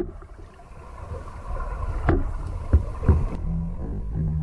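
Underwater sound picked up by a diver's camera at the sea bottom: a low rumble with a few dull knocks about two and three seconds in, then a steady low drone near the end.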